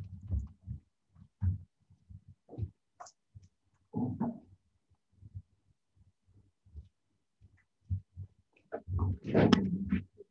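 Muffled, irregular bumps and brief indistinct room noises picked up over a video call, cut off into dead silence between them, with a louder jumble of sound near the end.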